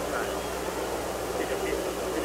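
Steady hiss and low hum of an old TV broadcast recording, under a faint stadium crowd murmur with a few distant voices.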